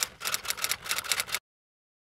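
Typewriter keystroke sound effect: a quick, even run of key clacks at about eight a second, cutting off suddenly about one and a half seconds in.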